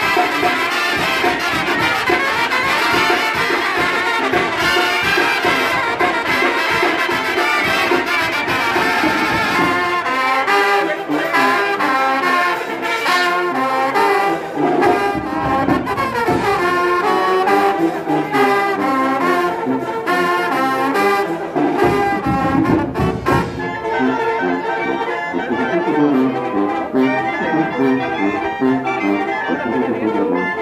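A Sinaloan banda playing an instrumental passage: trumpets, trombones and clarinets carry the melody over a sousaphone bass line and drums. The band plays loudly throughout, and the bass thins out about a third of the way in.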